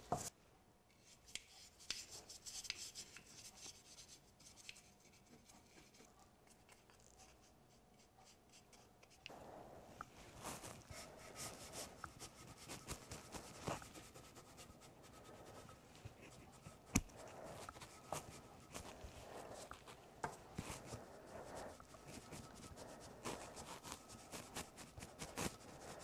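Faint handling sounds: a few light clicks from the adhesive can and tools. Then, from about nine seconds in, soft irregular puffing and rubbing as a hand-pumped mini flocker tube blows flock fibres onto wet adhesive, with one sharper click near the middle.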